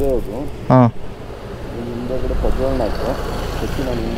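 Voices talking over a steady low rumble from motorcycles at a petrol pump, with one short loud blip just under a second in.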